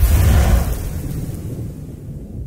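Cinematic boom sound effect for a title reveal: a sudden deep hit with a low rumbling tail that fades away over about two seconds.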